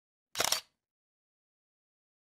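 A single SLR camera shutter firing once, a quick click-clack about a third of a second in.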